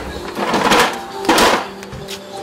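Electric orbital sander run on a wooden window-frame piece: two loud rasping bursts of sanding less than a second apart, then the motor's steady hum.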